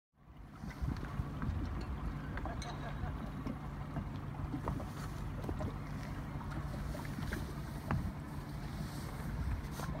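Wind on the microphone and small waves lapping against a boat, over a low steady hum, with scattered light clicks and splashes.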